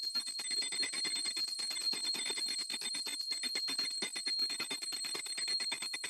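A small hand bell rung rapidly and without pause, about eight strikes a second, its high ringing tone held throughout: the prayer bell rung during an aarti, the waving of the lamp before the shrine.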